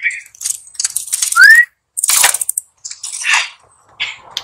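Bicycle chain and rear derailleur rattling and clicking in short bursts as they are worked by hand. One brief rising whistle-like note comes about a second and a half in and is the loudest sound.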